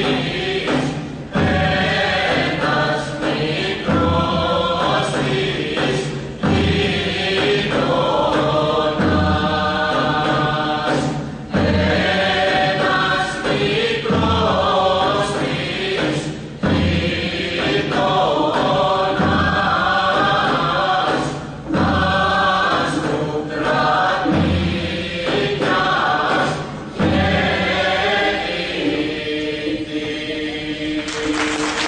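A group of voices singing a traditional Greek folk dance song together in unison, in short phrases broken by brief pauses every two to three seconds.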